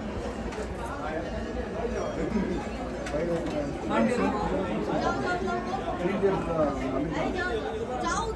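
Several people talking at once, a continuous chatter of overlapping, indistinct voices.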